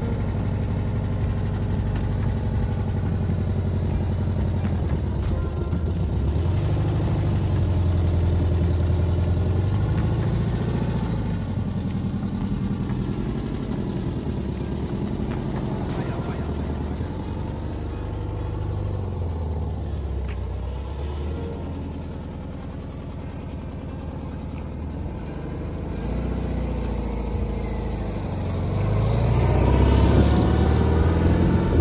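1958 Volkswagen Beetle's air-cooled flat-four engine running at idle, its note rising and falling with light revs several times. Near the end it revs up and gets louder as the car pulls away.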